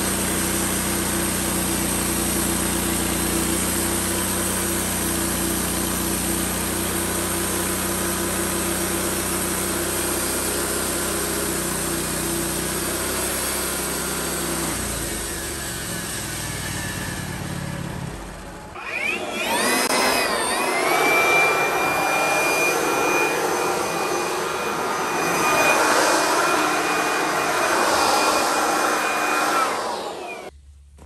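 Wood-Mizer band sawmill running steadily as its blade cuts through a log. About two-thirds of the way in, it gives way to a cordless brushless leaf blower that spins up with a rising whine, then runs with a steady high whine and rushing air.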